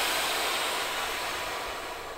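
Air suspension of a 2016 Genesis EQ900 (a four-channel system) hissing as air rushes through its valves to raise the car, the hiss steady at first and slowly fading toward the end.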